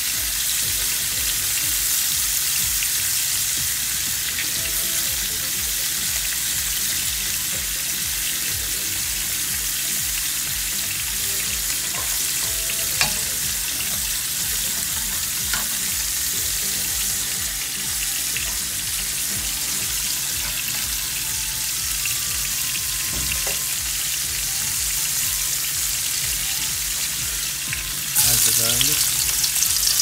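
Fish frying in hot cooking oil, a steady sizzle. About two seconds before the end, chopped garlic goes into hot oil in a wok and the sizzling gets suddenly louder.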